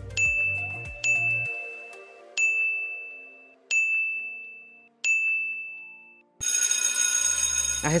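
Quiz countdown timer: five electronic dings, each sharp at the start and ringing away, a second or so apart. After them comes a harsh, steady buzzer lasting about a second and a half, signalling that time is up.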